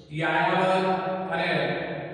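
A man's voice reading aloud in Gujarati in a steady, drawn-out, sing-song way, starting just after a short pause and stopping briefly near the end.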